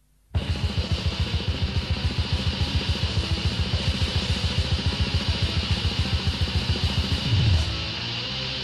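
Black metal starts abruptly a moment in: distorted guitars over fast, even drumming with rapid bass-drum beats. A low note slides downward near the end.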